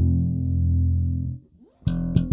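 Music Man StingRay electric bass played through a Markbass Little Marcus head, with the Old School low-pass and Millerizer filters turned up: one low note held for about a second and a half, then cut off. A quick slide up leads into the next bright, sharp-attacked note near the end.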